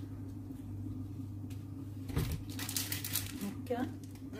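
Baking paper crinkling and rustling as it is handled and rolled around the meat, starting about two seconds in and lasting a little over a second, over a steady low hum.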